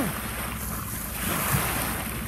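Bow wave of a sailing yacht rushing and splashing along the hull, the hiss of the water swelling about halfway through, with wind rumbling on the microphone.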